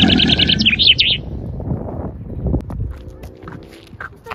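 A rapid, bird-like chirping trill, about ten chirps a second, that ends in a few falling chirps about a second in. Quieter low noise with a few soft clicks follows.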